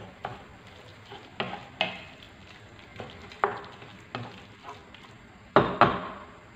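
Wooden spatula stirring and scraping a chicken and onion filling in a frying pan, with irregular knocks against the pan, the loudest near the end, over a faint sizzle of frying.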